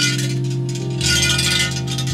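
Shrine suzu bell jangling as its rope is shaken: a short jangle at the start, then a longer one about a second in, over steady background music.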